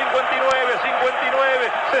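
Male Spanish-language TV football commentator counting off the final seconds of the match ("fifty-nine") over a dense stadium crowd noise, with a sharp knock about half a second in.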